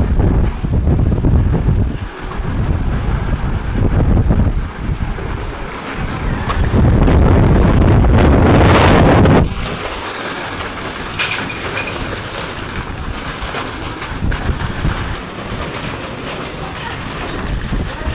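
Strong storm wind gusting and buffeting the phone's microphone. The loudest gust comes from about seven to nine and a half seconds in, then it eases to a steadier rush.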